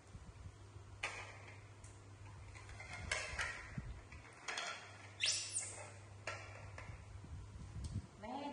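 Fruit and ceramic plates being set down on a tiled floor: a series of light knocks and clinks a second or so apart, over a low steady hum. A short rising squeak sounds near the middle.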